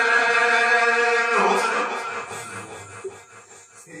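Two male reciters chanting unaccompanied into a microphone, a held, drawn-out note that breaks and fades about a second and a half in, leaving a quiet pause before the next line starts at the very end.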